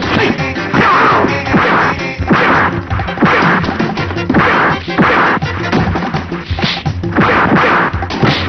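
Film fight-scene punch sound effects: a series of loud whacks and crashes, roughly one hit a second, over background music.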